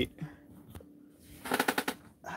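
A quick, loud rattle of about eight sharp clicks in half a second, near the end: a plastic-windowed cardboard action figure box being picked up and handled.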